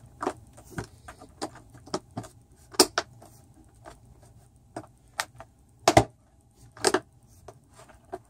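Storage tub lid being pressed down and snapped shut on an overfull tub: a run of irregular clicks and knocks, loudest about three and six seconds in.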